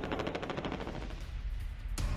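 Rapid automatic gunfire, a fast even rattle of shots that fades away over about a second and a half, followed by a sharp hit near the end.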